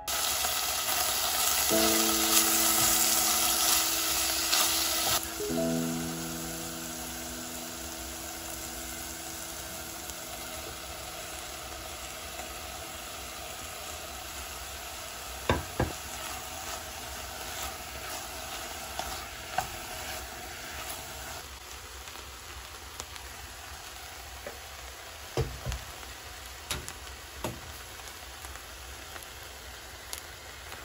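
Chopped vegetables, konnyaku and chikuwa sizzling as they are stir-fried in a pot on a gas burner. The sizzle is loudest for the first five seconds or so, then settles to a steady, quieter hiss. A utensil knocks against the pot a handful of times in the second half.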